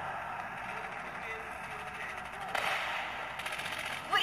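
Sound of the Modern Combat shooter game played from a smartphone's loudspeaker: a steady in-game ambience, with a sudden burst of sharp sound effects about two and a half seconds in and a few short sharp cracks shortly after.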